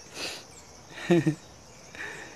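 A man's laughter trailing off: a breathy exhale, then one short voiced laugh about a second in.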